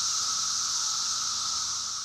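Chorus of periodical cicadas: a steady, high buzzing drone that cuts in suddenly and holds level.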